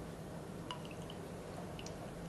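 Faint drips of liquid falling into a glass test tube: a few small drops about a second in and again near the end, over a steady low hum.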